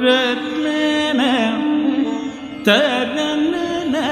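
Live Carnatic classical music: ornamented melodic phrases that slide and shake in pitch over a steady drone, with new phrases entering about a second in and again near three seconds.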